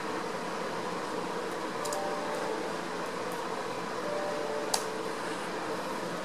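A few sharp clicks of laptop keys as a command is typed and entered, the loudest nearly five seconds in, over a steady background hiss.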